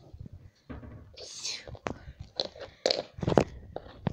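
Quiet whispering and breathy sounds from a child, with a handful of sharp light taps in the second half from the phone and small cardboard toy figures being handled on a wooden floor.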